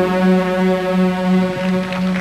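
A synthesizer holding one sustained chord at the end of a synth-pop song, steady and without drums.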